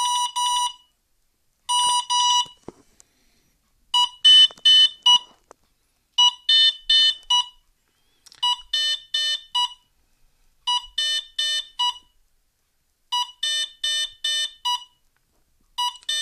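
Energ Pro 40A brushless ESC sounding its programming-mode beep codes: a couple of single beeps, then a short phrase of several quick beeps repeated about every two seconds. It is stepping through its setup menu, here the options for the low-voltage cutoff threshold.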